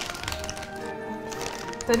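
Soft background music with sustained held tones, and a few faint light clicks near the start.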